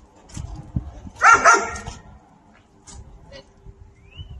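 A dog gives a short burst of barking about a second in, with a few faint clicks around it.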